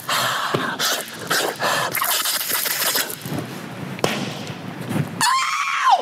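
A man making wordless vocal noises, breathy hissing and sputtering with sharp clicks, while acting out being high on drugs. Near the end come a high-pitched wail that rises and then falls away.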